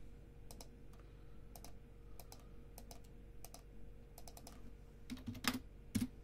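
Computer keyboard typing in scattered taps and clacks, with a louder flurry of key strikes and a thump near the end, over a faint steady electrical hum.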